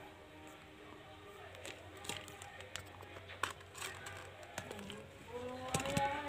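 Faint background music in a quiet room, with a few scattered small clicks and taps of objects being handled on a table.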